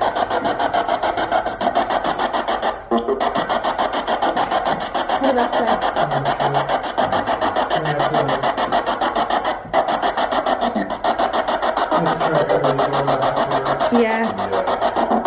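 Spirit box sweeping through radio stations, played through effects pedals and a Danelectro Honeytone mini amp: a fast, choppy stream of static and clipped fragments of voices. It breaks off briefly about three seconds in and again near ten seconds.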